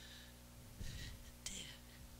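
Faint audible breathing of a woman exercising: a few short, hissy breaths in and out, with one small click about one and a half seconds in.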